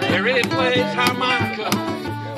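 Live acoustic country-style song: two acoustic guitars strumming with a cajon keeping the beat, and a voice over them.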